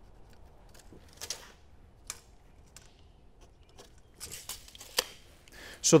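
Pencil scratching short layout marks on a pine 2x4 wall plate: a few quick strokes about a second in and a cluster about four seconds in, with a couple of light clicks between them.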